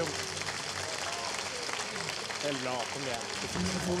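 Studio audience applauding, with a man's voice talking over it in the second half.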